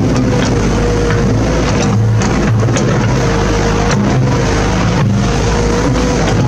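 Steady road-traffic noise, with a van's engine and tyres close by as it drives past.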